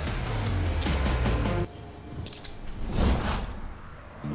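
Handcuffs ratcheting shut on a man's wrists: a run of quick metallic clicks over a low music drone, which cuts off abruptly about a second and a half in. A brief rushing swell follows near the end.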